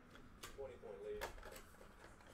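A faint murmured voice with two light clicks, one near the start and one about a second in, from plastic card top loaders being handled.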